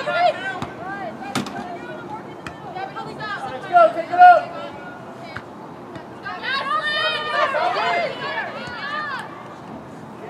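Shouted calls from players and the sideline at a soccer match, loudest about four seconds in, with a sharp knock about a second and a half in.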